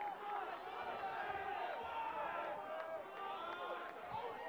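Stadium crowd ambience: a steady murmur of many overlapping voices from spectators and players, with scattered calls.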